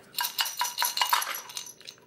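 Hard dried banana slices rattling and clinking against the inside of a glass jar as the jar is moved about, a quick run of clicks that fades out after about a second and a half.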